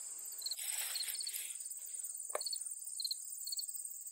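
A faint, steady, high trill of insects in the grass, with short chirps repeating over it. A brief rustle comes about a second in, and a single sharp click a little past two seconds.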